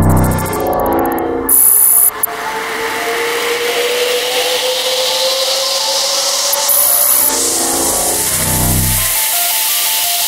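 Glitchy electronic trance music in a breakdown. The beat drops away while a hiss swells and rises in pitch over several seconds, and a thin tone glides slowly upward beneath it. Short bright glitch bursts come about two seconds in and again about seven seconds in, and falling pitch sweeps pass at the start and again near the end.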